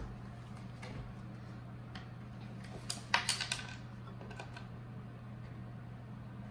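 A few light clicks and taps of wooden roller-coaster parts being handled and adjusted, with a quick cluster of clicks about three seconds in, over a steady low hum.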